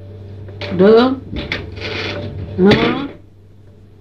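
A woman's voice slowly pronouncing single Sanskrit seed syllables of the Manipura (Nabhi) chakra, such as "Da" and "Na", one at a time with pauses, and a breathy hiss between them. A steady low electrical hum runs underneath.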